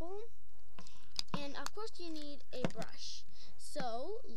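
A voice talking softly, with two short sharp clicks about a second and two and a half seconds in from the plastic toy-phone lip gloss case being handled.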